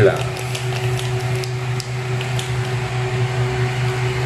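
Steady mechanical hum, like a fan or kitchen appliance running, with a low drone and a higher steady tone. A few faint light clicks come in the first second and a half.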